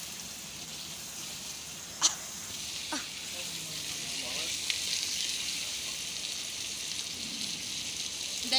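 Curry frying and sizzling in a wok over an open wood fire, a steady hiss. There is one sharp click about two seconds in and lighter ones about a second and nearly three seconds later.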